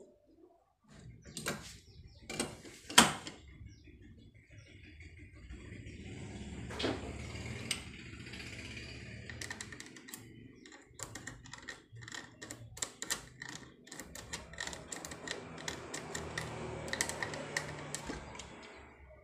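A steel mortise lock body being handled against a wooden door: a few sharp clicks and knocks of metal on wood, the loudest about three seconds in, then a long run of light rattling clicks over a low rustling scrape.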